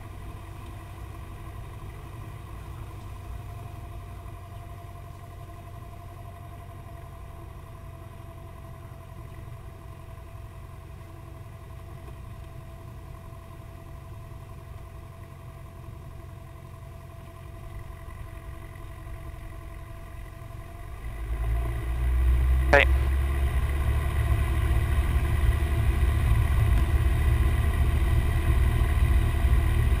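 Cessna 172P's Lycoming four-cylinder engine and propeller heard from inside the cockpit: running at low taxi power for about twenty seconds, then throttle advanced to full power, the sound rising sharply and staying loud for the takeoff roll.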